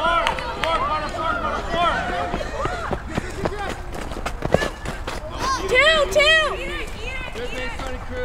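Several voices shouting and calling out at once in short, arching calls, loudest about six seconds in. A single sharp knock cuts through about four and a half seconds in.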